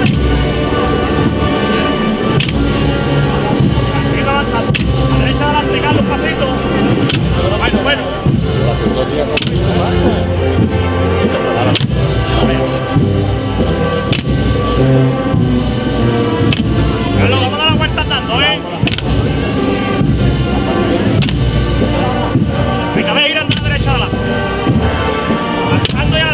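A wind band of brass, woodwind and percussion playing a Spanish processional march, with bass drum strokes every couple of seconds.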